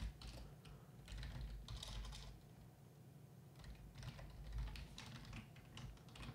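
Computer keyboard typing: a few light keystrokes in small, scattered clusters.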